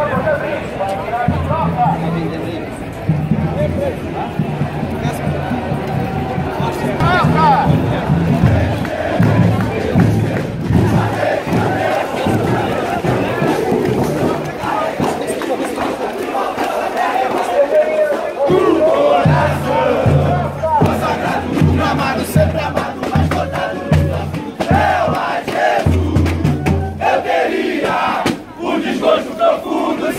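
Crowd of Flamengo football supporters chanting and singing together, with a drum beating a steady rhythm under the voices for long stretches.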